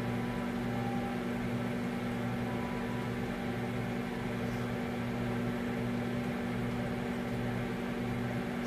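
Kitchen appliance running with a steady, low electrical hum.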